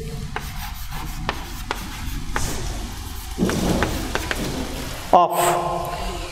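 Chalk writing on a blackboard: a run of scratchy strokes with small sharp taps as a word is written by hand.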